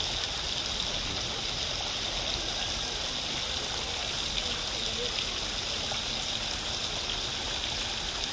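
Steady rushing of running water, an even hiss with no beat or tune, under faint voices of people talking.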